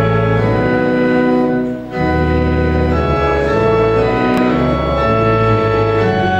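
Church organ playing slow, sustained chords of a psalm tune, with a brief break between phrases just before two seconds in.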